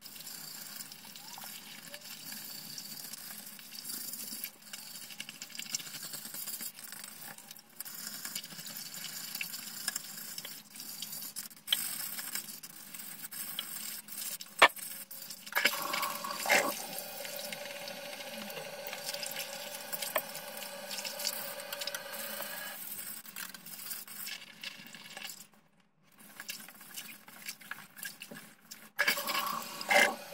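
A pumice stone scrubbing hard-water stains off a porcelain toilet bowl under the water, with water sloshing. A little past halfway a toilet flushes, water rushing through the bowl for several seconds.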